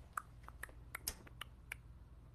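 A string of small, sharp clicks and taps, about eight in two seconds at uneven spacing, over a low steady hum.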